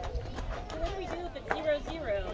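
Players and spectators calling out and chattering, several voices overlapping, with a sharp knock about one and a half seconds in.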